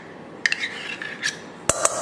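Metal spoon scraping thick Greek yogurt out of a measuring cup over a stainless-steel mixing bowl: a short scrape about half a second in, a light click, then a sharp clink of utensils near the end.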